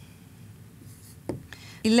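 Dry-erase marker writing on a whiteboard: faint strokes, with a short tap a little over a second in.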